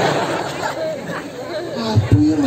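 Indistinct talking with crowd chatter behind it.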